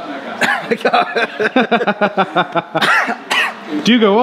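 A man's voice, breaking off near the end into a couple of throat-clearing coughs from a voice that is going hoarse.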